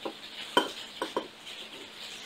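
Whisky being poured from a nearly empty glass bottle into a nosing glass, quiet, with three short, sharp sounds: one about half a second in and two close together around a second in.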